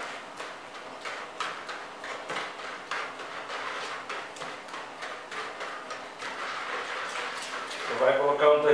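A metal spoon stirring a runny egg mixture in a plastic basin, clicking and scraping against the bowl in a quick, uneven rhythm of a few strokes a second.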